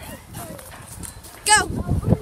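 A child's high-pitched shout of "Go" about a second and a half in, over quieter footsteps swishing through grass and dry leaves.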